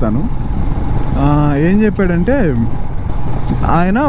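Motorcycle engine and wind noise running steadily while riding, with a voice speaking over it about a second in and again near the end.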